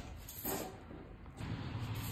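Quiet background room tone with a low hum and a brief soft rustle about half a second in.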